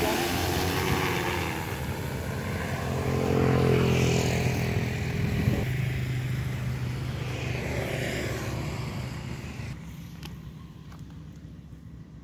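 Multirotor agricultural spraying drone's propellers humming steadily as it flies out over the field, the pitch shifting in the first second; the hum fades away over the last two seconds.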